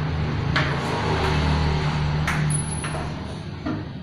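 A hand screwdriver working screws out of a panel, giving a few sharp clicks and knocks. A steady low hum runs underneath and fades near the end.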